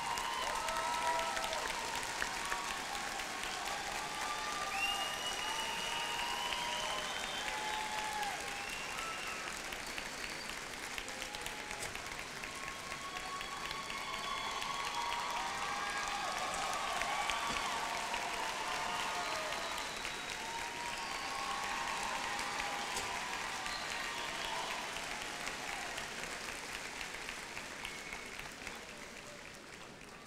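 An audience applauding at length, with many voices shouting and whooping through the clapping. It fades out near the end.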